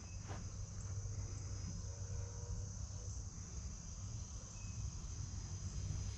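Steady, high-pitched insect chorus, with a faint low rumble underneath.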